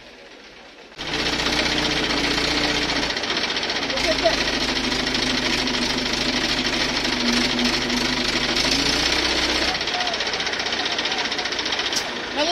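A truck's diesel engine running loud and rattly, starting up suddenly about a second in and easing back near the end.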